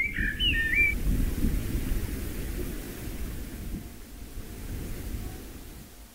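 A brief bird call, a few quick pitch glides, in the first second, over a low rumbling noise that fades away gradually.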